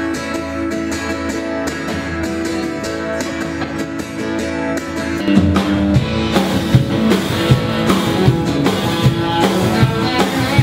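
Live band playing an instrumental song intro on acoustic guitar, electric guitar and upright bass. A drum kit joins about five seconds in with a steady beat.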